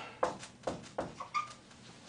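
Dry-erase marker squeaking and tapping on a whiteboard in a few short strokes as digits are written, with a brief thin squeak a little past the middle.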